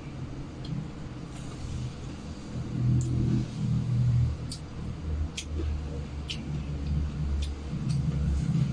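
A low, steady rumble that swells slightly a few seconds in, with a handful of faint, short clicks scattered over it.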